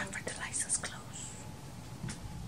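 A woman whispering a few words close to the microphone in the first second, then faint room tone.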